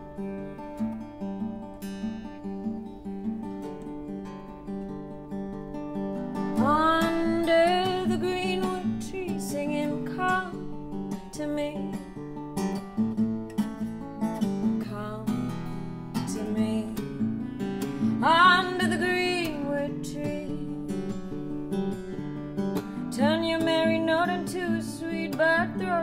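Acoustic guitar playing a slow, bluesy accompaniment. About six seconds in, a melody line that bends and slides in pitch joins it, and it comes back twice more.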